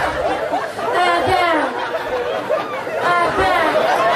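Speech only: a woman talking into a microphone in a high, sweeping voice, with crowd chatter underneath.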